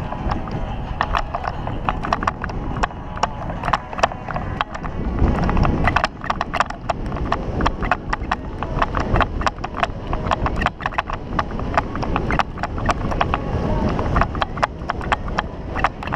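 Bicycle ridden over a rough dirt track: irregular rattling clicks and knocks from the bike jolting over bumps, over a low rumble of tyres on gravel and wind on the microphone.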